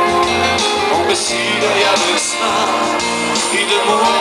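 Live pop-rock band playing loud and steady, with drums, bass guitar, electric guitar and keyboards under a male singer's voice.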